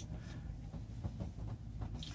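Quiet room tone: a faint, steady low hum under a light hiss, with no distinct event.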